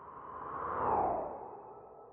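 A whoosh transition sound effect that swells to a peak about halfway through, with a falling sweep in pitch at its loudest, then fades away.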